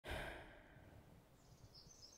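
A person's breath: one sudden sighing exhale right at the start that fades away within about half a second, followed by quiet with a faint high sound near the end.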